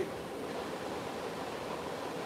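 Steady even hiss of background noise, with no speech and no other distinct sound.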